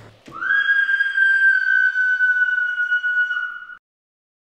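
A single high whistling tone that glides up as it starts, then holds for about three seconds while drifting slightly lower, and cuts off suddenly.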